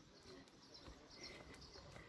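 Near silence: faint outdoor background, with a few faint high chirps.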